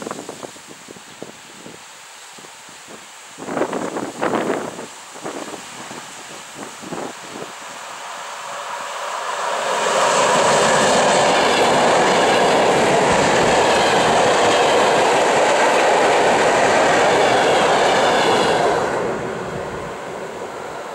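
ED9MK electric multiple unit passing by on the rails. Its noise builds about eight seconds in, stays loud and steady for about eight seconds, then drops away near the end.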